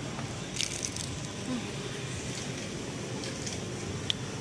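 Chewing crisp grilled rice paper: a few sharp crunches a little over half a second in and again around three and a half seconds, over steady background noise.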